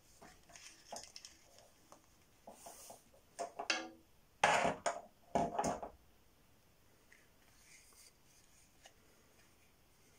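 Handling noises as a wooden-handled ferro rod, a leather holder and a paper strip are moved about on a marble slab. A few light knocks and rustles come first, then two louder sounds, each about half a second long, a little before and after the middle.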